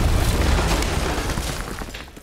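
A deep boom with a heavy low rumble, fading steadily and dying away near the end.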